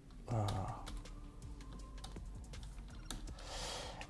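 A few scattered keystrokes on a computer keyboard, soft and irregular.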